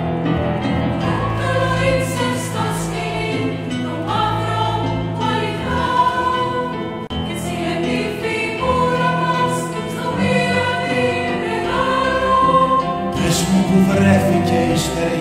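Women's choir singing long held notes in harmony over a small ensemble of piano, strings and guitar, with sustained low notes underneath; near the end the music brightens as more high sound comes in.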